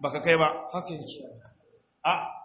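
A man's voice, drawn out and sing-song, fading out about one and a half seconds in.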